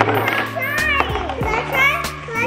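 Young children's voices chattering and exclaiming over background music with a steady beat.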